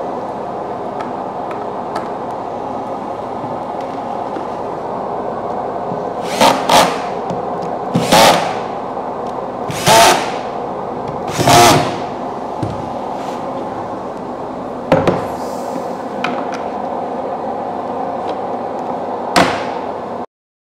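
Cordless drill-driver driving screws into a concealed cabinet hinge on a wooden panel: four or five short whirring bursts, each under a second, spaced a second or two apart, with a couple of sharp clicks later on.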